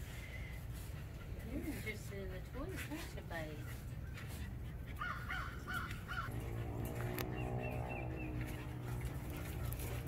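Faint outdoor background of birds calling, with a quick run of harsh calls about five seconds in and short high chirps a little later, over a steady low hum. A steady droning tone comes in about six seconds in.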